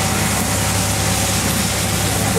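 A heavy engine or machine running steadily: a constant low hum under a wide, even hiss.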